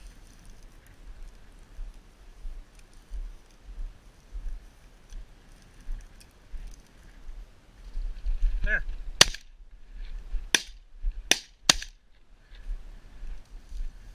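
Four shotgun shots fired in quick succession at flushing pheasants, spread over about two and a half seconds, the first the loudest. Wind rumbles on the microphone throughout.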